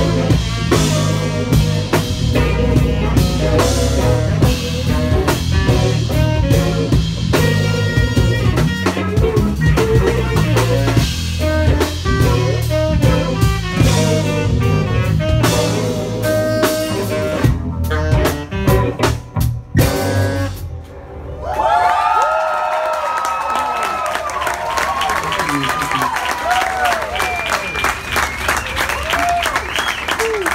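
Live band of electric guitar, bass guitar and drum kit playing the end of a song, breaking into a few stop-start hits and stopping about two-thirds of the way in. The audience then cheers, whoops and claps.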